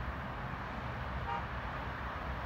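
Distant city traffic noise with a steady low rumble, and a short car horn toot a little past halfway through.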